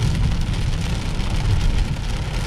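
Steady low road and engine noise heard inside the cabin of a Cadillac DeVille cruising at about 40 mph. Its Northstar V8 is overheating, with the engine-hot warning on.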